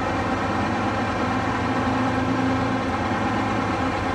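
Detroit Diesel 71-series two-stroke diesel engine of a school bus turning over and catching, then running. Air got into the fuel line when an injector was swapped, so the engine is hard to start.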